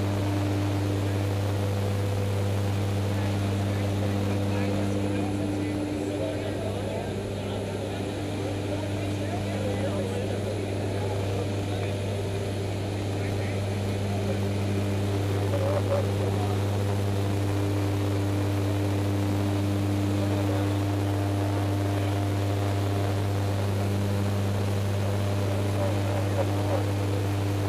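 Propeller aircraft engine droning steadily inside a jump plane's cabin in flight, a strong low hum with a few steady higher tones over it.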